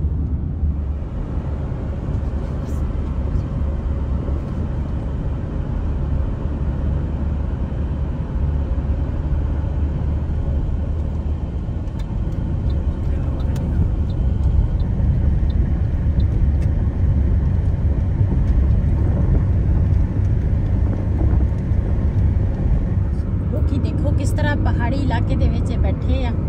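Steady low road and engine rumble inside a moving car's cabin at highway speed, with voices coming in near the end.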